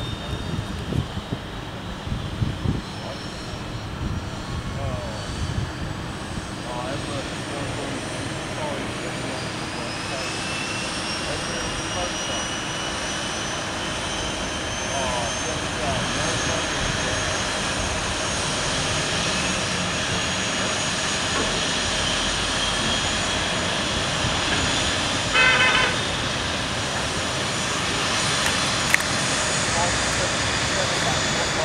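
ATR-72 turboprop engine starting up: a turbine whine that climbs slowly and steadily in pitch from about a third of the way in as the engine spools up, over a steady rushing noise. A brief burst of clicking comes about three-quarters of the way through.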